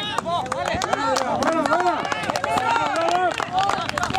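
Several voices shouting and calling out over one another, with scattered sharp clicks.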